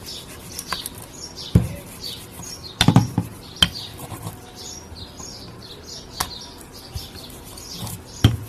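Small birds chirping over and over in the background, with a few sharp knocks, loudest around one and a half to three and a half seconds in, from a rolling pin rolling dough on a wooden board.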